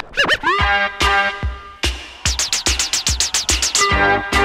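Vinyl records being scratched and cut on DJ turntables and a mixer in a battle routine. Short pitch-gliding scratches come first, then a held sampled note. In the second half comes a fast stuttered run of chopped hits, about eight a second.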